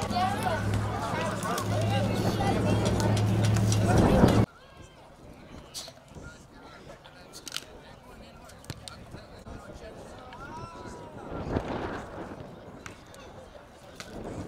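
A man's voice talking over a steady low hum for about four and a half seconds, then an abrupt cut to quieter crowd ambience with faint voices and a few sharp knocks.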